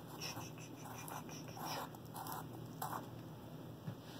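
Fingers working at the rim of a round tin of dip tobacco to open it, a series of faint, short scratchy scrapes and rustles.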